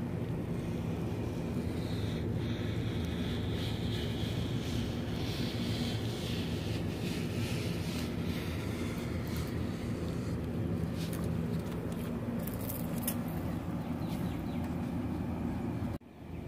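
Old scissors gliding along a polypropylene banner, a soft scraping hiss of the blades through the plastic, over a steady low mechanical hum in the background.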